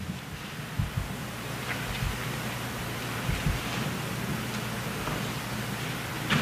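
Steady hiss through the hall's microphone and sound system, with a few soft low thumps from people moving about at the podium and its microphone.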